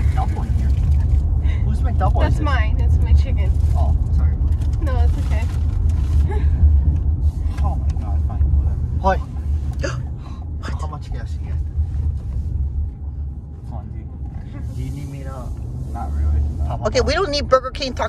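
Low road and engine rumble inside a moving car's cabin, heavier in the first half and easing after about ten seconds, with brief murmured voices here and there.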